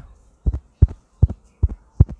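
Handling noise on a Comica VM10 Pro shotgun microphone: five dull, low thumps about a third of a second apart as a hand knocks against the mic.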